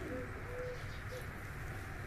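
A dove cooing: three short, low, soft notes in quick succession over a steady low background rumble.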